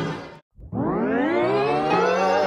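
Background music fades out. After a brief silence, a rising synth swell climbs steeply in pitch and levels off into a steady held chord.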